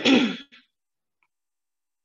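A woman clears her throat once, briefly, in the first half second.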